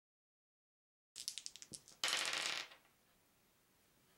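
A handful of plastic polyhedral dice rolled onto a wooden tabletop: a quick run of about eight clicks, then a dense clatter about two seconds in that dies away as the dice settle.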